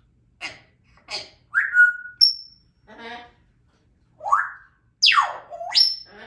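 African grey parrot whistling and chattering in short separate calls: a whistle that falls and then holds, a sharp high peep, a low raspy note, and near the end a long whistle that swoops down and back up.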